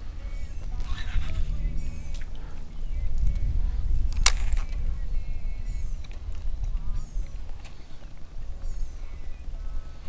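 Birds calling in short, falling chirps over a steady low rumble, with one sharp click about four seconds in.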